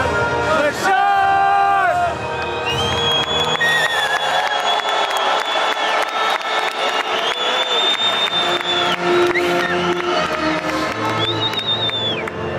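A national anthem playing over a football stadium's loudspeakers, with a large crowd of fans singing along and cheering, in long held notes.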